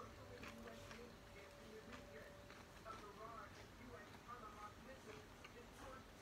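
Faint chewing and small mouth clicks of a man eating an egg sandwich, with a few soft ticks scattered through an otherwise very quiet room.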